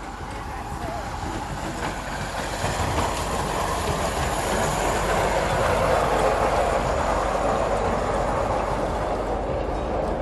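Miniature ride-on passenger train rolling past on its small-gauge track, its wheels running on the rails. The sound builds to its loudest about halfway through as the train passes close, then eases off slightly.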